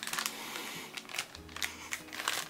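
A person sniffing at a plastic bag of dried orange slices held to the nose, with the thin plastic crinkling and giving short clicks as it is handled.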